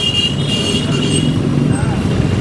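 Road traffic passing, a motor vehicle's engine running, with a steady high-pitched tone over it that stops about a second and a half in.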